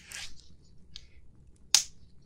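Surgical latex gloves being handled and snapped: a short rubbery rustle at the start, a small click about a second in, and one sharp, loud snap near the end.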